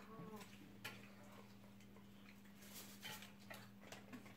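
Near silence: a few faint clicks and taps of people eating at a table, over a steady low hum.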